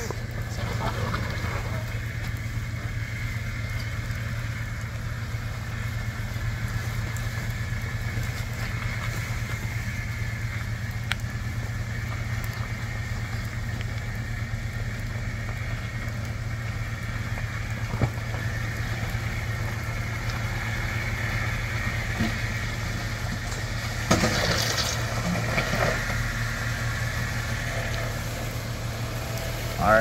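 Jeep Wrangler JK's engine running steadily at low speed as it crawls slowly over muddy ruts and rocks, with a single sharp knock about eighteen seconds in.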